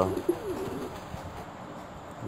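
Domestic pigeon cooing: one short, low coo just after the start, then only faint background.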